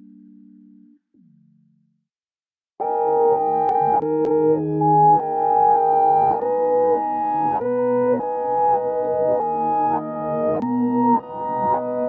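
Reversed piano loop, chopped into sections and rearranged, playing back from about three seconds in. Clicks sound at the joins between sections because the cuts have no crossfades yet. The loop stops abruptly at the end.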